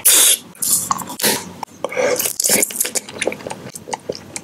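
Close-miked wet mouth sounds from eating: a few loud hissing, slurp-like bursts in the first half, then small lip and tongue clicks.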